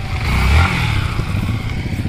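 A motorcycle riding close past, its engine and exhaust loudest about half a second in and then fading. Another motorcycle engine keeps up a steady idle underneath.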